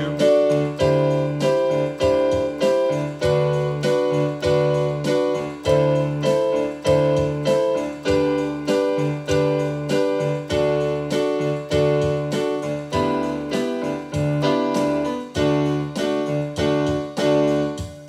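Electronic keyboard playing the D scale with C natural (low 2) in place of C sharp, each note struck four times in steady quarter notes over held low chords. The last note dies away at the end.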